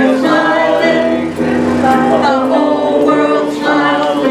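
Music with several voices singing held notes.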